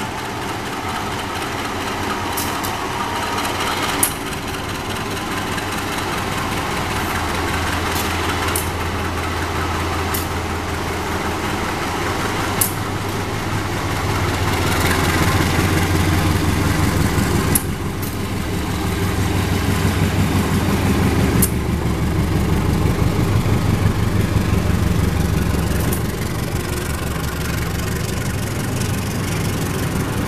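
Diesel-electric locomotive pulling slowly into a station: its engine's low steady drone grows louder through the middle of the stretch as it comes close and passes, then eases a little as the coaches roll by. A few sharp clicks cut in along the way.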